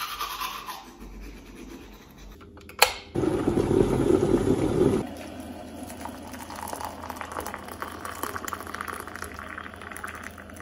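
Teeth being brushed with a toothbrush for the first few seconds, then a sharp click. After that, hot water is poured from a kettle into a mug over a tea bag, loudest for the first couple of seconds and then trickling more softly.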